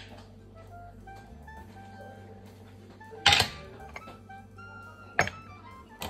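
Two sharp knocks of kitchenware being handled on the counter, a loud one about three seconds in and a smaller one near the end, over quiet background music.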